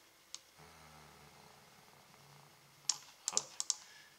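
Computer mouse and keyboard clicks while a colour is picked in a code editor: one click just after the start, then a quick run of five or six sharp clicks about three seconds in.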